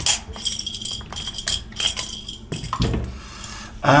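A run of sharp clicks and small metallic clinks, some with a brief high ring, as a metal tool works at the plastic gear housing of an electric salt and pepper grinder while it is taken apart.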